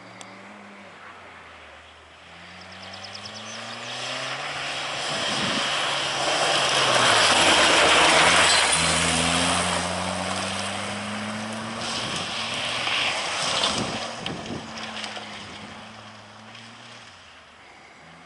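Race car engine revving up and down through gear changes as the car approaches, passes close and pulls away on a loose dirt track. It is loudest about eight seconds in, where tyre and gravel noise join the engine, then fades.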